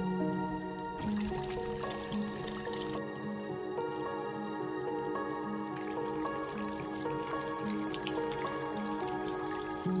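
Slow background music of long held notes, with water trickling and dripping from a garden fountain underneath.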